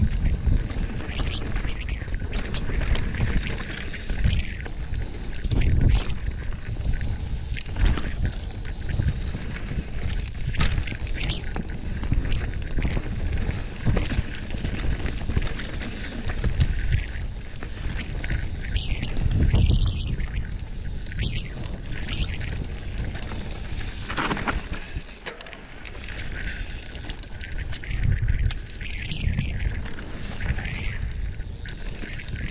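A Rocky Mountain electric mountain bike ridden downhill on a rough dirt trail: tyres rolling over dirt and roots under a steady rumble of wind buffeting the microphone, with frequent rattles and knocks from the bike over bumps. It eases briefly about three-quarters of the way through.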